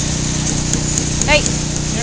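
A steady low engine drone, with a few faint sharp clicks over it.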